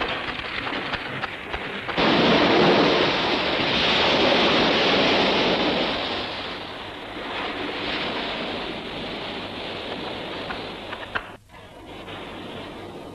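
A loud rushing roar with no distinct tone, in a film soundtrack. It steps up suddenly about two seconds in, swells, then slowly dies away, with a brief dip near the end.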